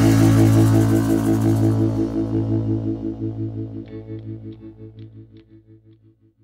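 The final chord of a band song ringing out: a held electric guitar chord with a wavering, pulsing effect, fading away over about six seconds.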